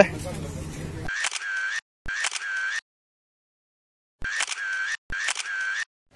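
Four short edited-in intro sound effects, each a click followed by a steady whir. They come in two pairs, the second pair about three seconds after the first, and each stops abruptly into silence. Before them, about a second of market chatter.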